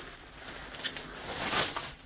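Plastic bubble wrap rustling and crinkling as it is pulled off a wrapped glass candle jar, with a few faint clicks.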